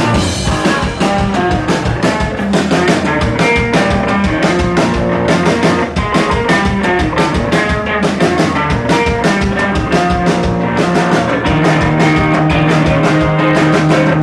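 A live rock band playing loudly, with electric guitar, strummed acoustic guitar and a drum kit keeping a steady beat.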